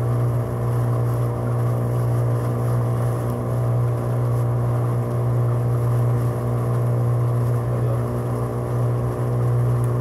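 Small boat's outboard motor running steadily at a constant low speed, heard from on board as a continuous even drone.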